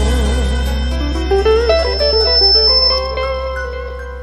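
Live dangdut band closing a song. A held note with vibrato ends about half a second in, then a descending instrumental run over a steady low bass leads into sustained final notes that fade out near the end.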